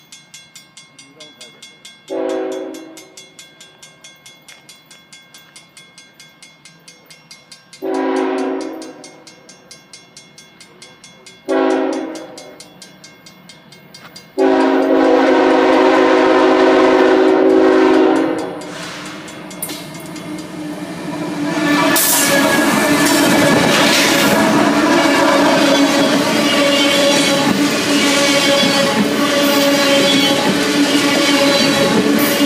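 CSX freight locomotive's horn sounding four blasts, long, long, short, long, the standard grade-crossing signal. About two thirds of the way in, the locomotive reaches the microphone and a string of tank cars rolls past with a loud, steady rumble and wheel clatter.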